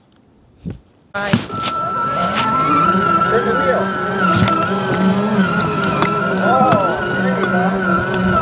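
Electronic racing-car sound effects mixed with music from an electric ride-on toy car's speaker. They cut in suddenly and loudly about a second in, over a steady high tone.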